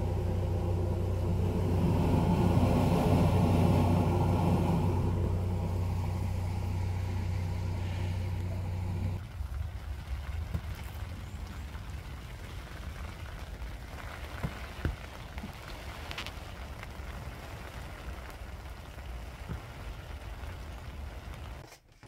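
A steady, loud engine drone that cuts off suddenly about nine seconds in. It is followed by a softer, steady hiss of rain with a few faint taps.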